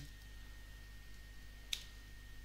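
A single sharp computer-keyboard key click about three-quarters of the way through, over a faint steady electrical hum with a thin high whine.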